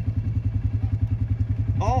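Small single-cylinder engine of a Yamaha youth ATV idling with a steady, fast, even beat.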